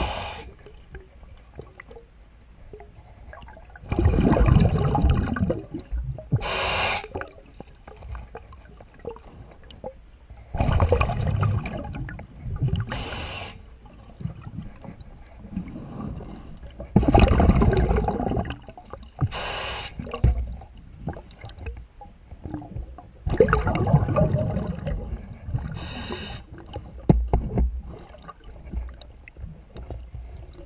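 A scuba diver breathing through a regulator underwater. About every six and a half seconds comes a bass-heavy rush of exhaled bubbles, roughly two seconds long, followed by a short, bright hiss. Four such breaths are heard.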